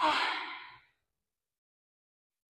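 A slow, audible out-breath through the mouth, a breathy sigh close to the microphone that fades away within the first second: a deliberate full exhale on a yoga breathing cue.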